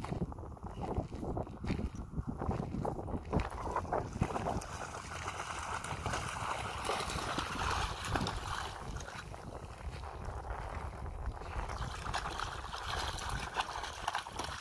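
Footsteps crunching on gravel for the first few seconds, then steady splashing as a German shepherd bounds and wades through shallow water, with wind on the microphone.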